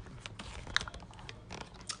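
A few faint clicks and light rustling as a handheld camera is moved and repositioned.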